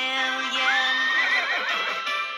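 A horse whinny sound effect: one rising, wavering call that starts about half a second in and lasts just over a second, over the song's instrumental backing music.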